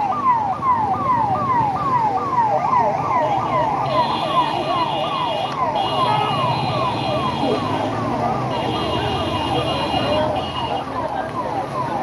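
Ambulance siren sounding a fast, repeating falling sweep, about two and a half sweeps a second, over crowd voices. A steady high-pitched tone joins in, on and off, from about four seconds in.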